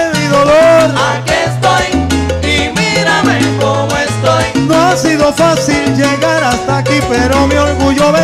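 Live salsa band playing, with a repeating bass line and steady percussion strokes under a melody.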